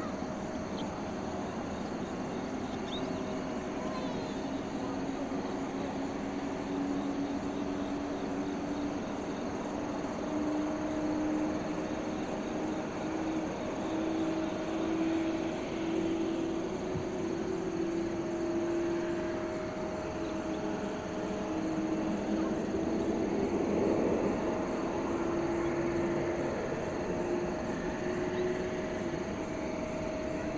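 Distant jet airliner engines running at taxi power: a steady rumble with a humming tone that slowly rises in pitch over the first half, then holds.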